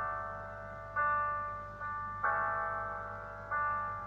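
Piano accompaniment playing sustained chords, struck four times and each left to ring and fade.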